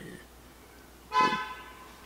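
A car horn gives one short honk, about half a second long, a little over a second in.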